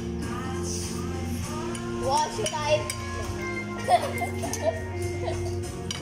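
Background music with steady held bass notes, under voices, with a few light clinks of cutlery on plates.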